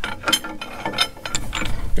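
Ratcheting wrench clicking in quick, irregular runs as a precombustion chamber is turned in its threads in a Caterpillar D2 diesel cylinder head, the chamber nearly unscrewed.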